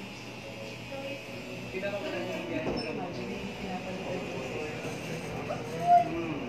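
Indistinct voices talking in the background, with a sharp knock just before the end.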